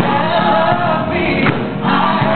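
Gospel choir singing loudly, full-voiced, over a steady beat.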